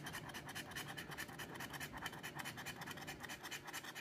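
Edge of a metal scratcher coin scraping the coating off a scratch-off lottery ticket in rapid, even back-and-forth strokes.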